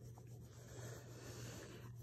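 Faint scratchy sounds of paper at a table, over a steady low hum.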